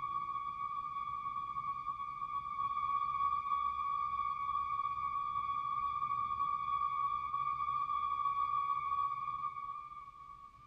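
A steady, high synthesized tone with overtones, held over a faint low drone; it dips briefly right at the end. It is the electronic scanning sound of the film soundtrack.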